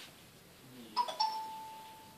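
A two-note chime about a second in: a brief higher note, then a slightly lower one that rings on and fades over about a second.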